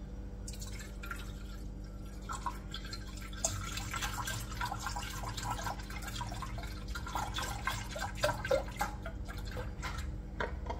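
Oat milk pouring from a carton into a pot, a continuous splashing stream that starts about half a second in.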